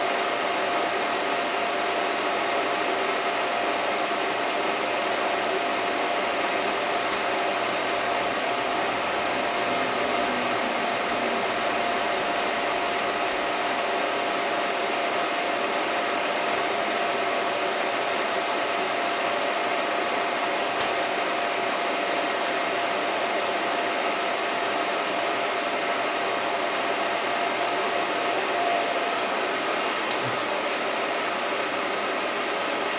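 A Super 8 film projector running: a steady mechanical whir with a constant high hum held at one pitch.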